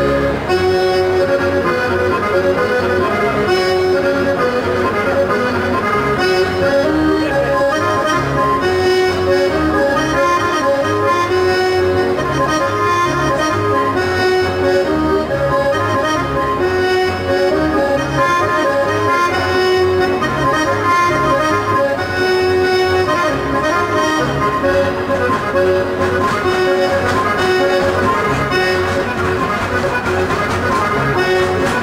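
Accordion playing a traditional Sardinian ballo dance tune, with sustained melody notes over an evenly pulsing bass.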